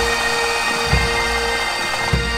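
Massed pipes and drums playing: bagpipes sounding a steady drone under the chanter tune, with a bass drum beat about a second in.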